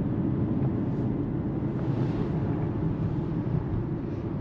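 Hyundai car driving, heard from inside the cabin: a steady low rumble of road and engine noise.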